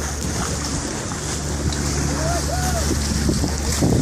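Boat under way: a steady low engine hum under wind buffeting the microphone and water rushing past the hull, with faint voices in the background.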